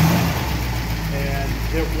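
Studebaker Avanti's V8 engine idling steadily and smoothly.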